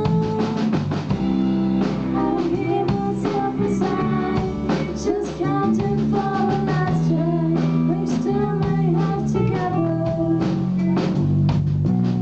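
A live indie-pop rock band playing a song: a female lead vocal sung over electric guitars and a drum kit.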